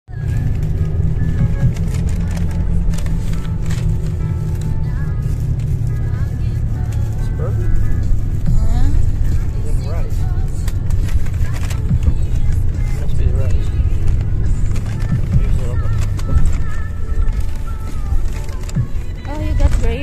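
Bus cabin sound: a steady low engine and road rumble, with music and voices in the background. Paper food bags and wrappers rustle close by.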